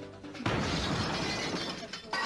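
Glass shattering: a sudden crash about half a second in whose noisy spray lasts more than a second, with music underneath.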